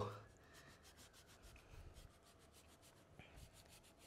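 Faint scratching of a cleaver blade scoring through the thick skin and fat of a raw pork belly on a wooden chopping board, with a couple of soft knocks.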